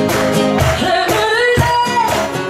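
An unplugged rock band plays live, with acoustic guitars, a cajon keeping a beat about twice a second, and accordion. A woman's lead vocal comes in a little after the start.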